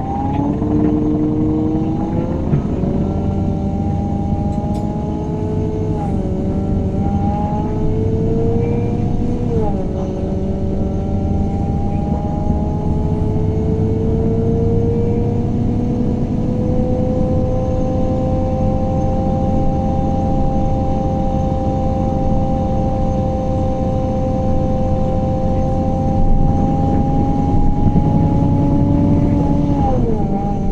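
2014 MAN Lion's City CNG city bus heard from inside while under way: its natural-gas straight-six engine and ZF Ecolife six-speed automatic gearbox whine rising in pitch as the bus accelerates. The pitch drops at two upshifts within the first ten seconds, then settles into a long, steady tone while cruising.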